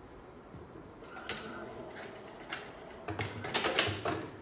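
Juki industrial lockstitch sewing machine stitching a short back-and-forth tack: brief runs of rapid clicking, first about a second in, then a denser run near the end.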